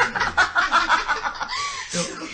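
Laughter right after a joke: a quick run of rapid 'ha-ha-ha' pulses, then a short rising-and-falling vocal sound near the end.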